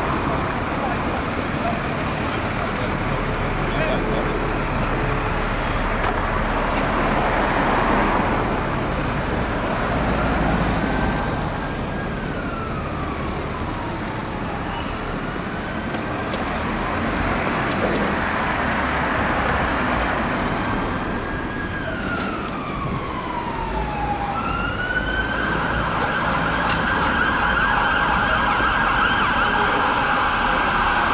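Emergency vehicle siren over steady town-centre traffic noise: slow wailing sweeps that rise and fall, heard twice, then from about twenty-five seconds in a continuous fast warble that carries on to the end.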